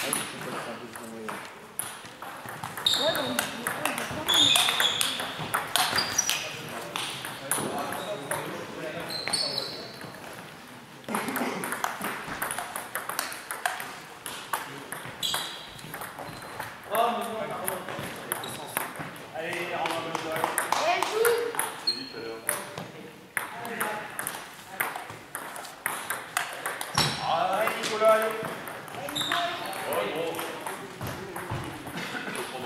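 Table tennis ball clicking off bats and the table in a series of sharp taps, with voices heard in the hall between strokes.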